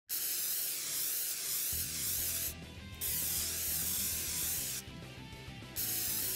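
Aerosol spray-paint can hissing in long passes, broken twice by short pauses, as graffiti lettering is sprayed. A music track with a steady low beat comes in under it about two seconds in.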